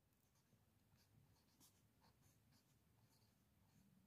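Near silence, with a few faint scratches of a marker pen writing on paper.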